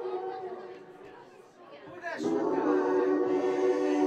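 Electro-pop song intro played live on synthesizer: held chords that fade down, then a falling sweep about two seconds in, followed by a louder sustained chord.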